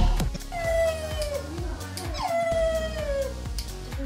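A cat gives two long drawn-out meows, each falling in pitch, the second starting about two seconds in.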